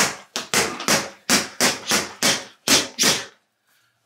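Boxing gloves punching a water-filled Aqua Bag punching bag: a rapid series of about ten sharp thuds, roughly three a second, stopping about half a second before the end.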